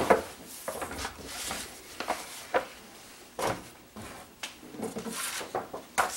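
Large newsprint pages rustling as they are handled and put aside, with a handful of light knocks and taps of things set down on a desk.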